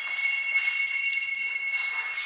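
A steady high-pitched whine of two close, unwavering tones over a faint hiss.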